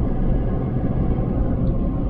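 Road and engine noise inside a Ford F-250 Super Duty pickup's cab while driving: a steady low rumble.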